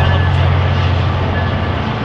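A train passing, a loud steady low rumble.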